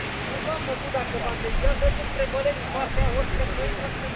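Voices of people talking at a distance, over a low rumble from cars moving slowly on a slushy road.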